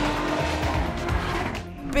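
Lotus Exige S sports car's supercharged V6 engine running hard on a race track, mixed under a music bed. The sound dips briefly near the end.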